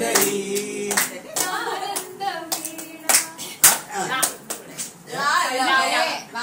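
Hands clapping in irregular, scattered claps, over a held singing note in the first second and talking voices afterwards.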